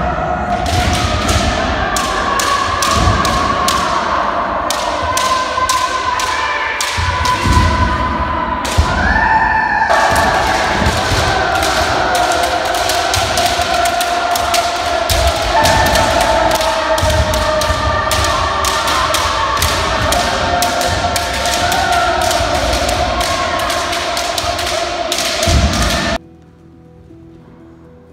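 Kendo sparring: rapid sharp cracks of bamboo shinai striking armour and heavy stamping thuds on the floor, over long held kiai shouts from many fencers. It all cuts off suddenly a couple of seconds before the end.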